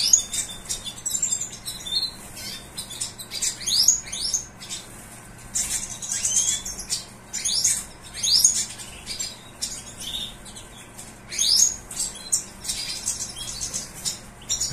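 European goldfinches of the large 'major' race in a wire breeding cage, giving short high twittering chirps again and again, with wing flutters as they flit about the cage.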